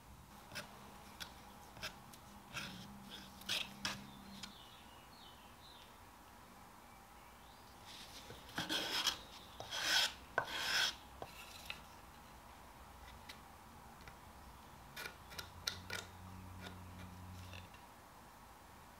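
Putty knife scraping across a wooden board as Bondo body filler is mixed with its hardener: short scrapes and taps, with a denser run of louder scrapes about halfway through.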